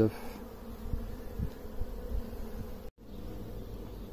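Honeybee colony buzzing on open hive frames: a steady, even hum of many bees. It breaks off for an instant about three seconds in.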